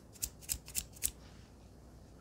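Fingertips tapping the flattened, packed surface of a powder mix of Ajax, corn flour and baby powder: about five quick, crisp taps, roughly three or four a second, stopping just after a second.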